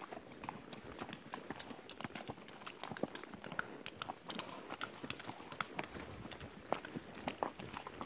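Horse's hooves clopping irregularly on a stony dirt trail as it is ridden along.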